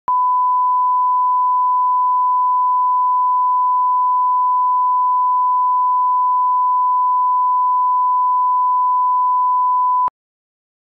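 Broadcast line-up test tone played with colour bars: a single pure 1 kHz reference tone, held steady and unchanging for about ten seconds, then cutting off suddenly.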